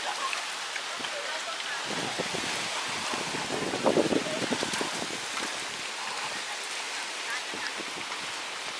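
Strong storm wind rushing steadily through trees, carrying leaves and debris. People's voices are heard faintly in the middle.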